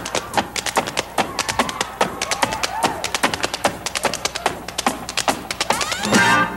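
Dancers' shoes tapping and stomping on a wooden stage floor in a fast footwork routine, many quick, uneven strikes a second, over quiet backing music.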